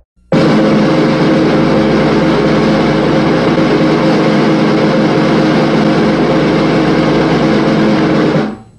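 A loud, steady roar with a sustained low drone of several held tones underneath. It starts abruptly just after the beginning and holds at an even level, like a soundtrack sound effect in a film intro.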